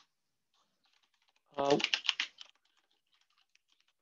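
Quick, faint keystrokes on a computer keyboard typing a line of code, in two short runs.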